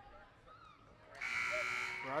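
Gymnasium scoreboard horn sounding one steady, loud buzz that starts a little over a second in, signalling a substitution during a stoppage for free throws. Faint crowd chatter comes before it.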